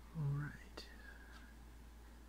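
A brief low voice sound rising in pitch, then a single sharp click, over a steady low hum.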